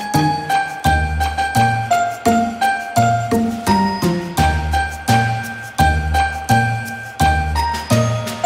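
Instrumental background music: a bright, bell-like chiming melody over a bass line, moving in a steady, even rhythm.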